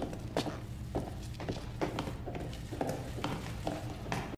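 Boot footsteps on a concrete floor, sharp strikes about two a second, over a low steady hum.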